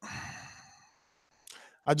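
A man's sigh into the microphone, a breathy exhale that fades away within the first second, followed by a short breath in just before he speaks again.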